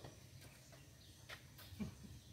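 Near silence: faint outdoor background with a few brief, faint clicks.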